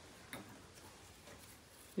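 Quiet room tone with one faint sharp click about a third of a second in, followed by a few softer ticks.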